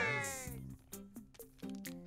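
A long, drawn-out meow sliding down in pitch and fading out about half a second in, followed by faint short musical notes and clicks.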